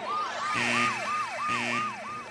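A comic, siren-like sound effect: a whistling tone that jumps up and slides down, repeated about three times a second, with a brighter chime about once a second.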